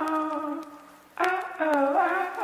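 Music: a brass melody of held notes with small bends, playing in two phrases with a brief pause about a second in.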